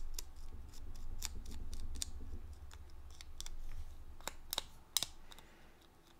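Palette knife spreading gritty Snowfall grit paste along the edges of a cardboard tag: irregular small scrapes and clicks.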